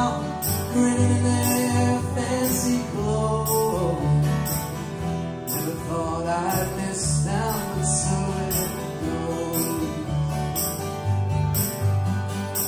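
Instrumental break with no singing: a harmonica in a neck rack plays a lead line with bent notes over strummed acoustic guitars and a plucked upright bass.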